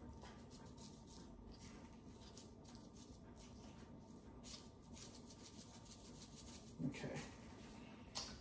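Faint, irregular rattle of red pepper flakes being shaken from a spice bottle into a small plastic bowl, over quiet kitchen room tone. A short murmur comes about seven seconds in.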